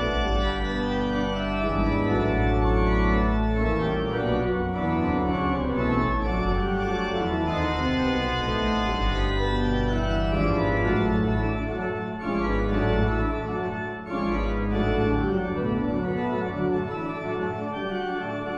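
Church organ playing full chords over sustained deep pedal bass notes, with the bass briefly dropping out twice near two-thirds of the way through.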